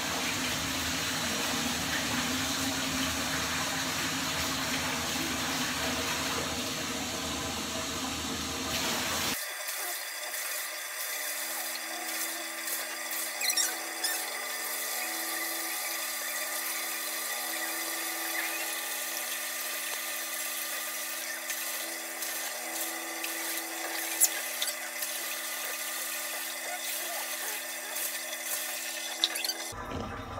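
Water running from a bathtub tap, a steady rush. About nine seconds in the sound changes abruptly: it turns thinner, with a steady hum underneath.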